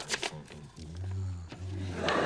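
Paper envelopes crackling and tearing, then a man's low, wordless vocal sound in two drawn-out stretches, starting about a second in.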